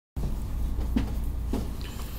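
Low steady background hum with two faint, soft knocks, about a second and a second and a half in.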